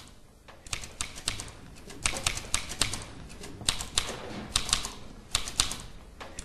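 Typewriter keys struck in quick bursts of a few strokes each, about five bursts with short pauses between.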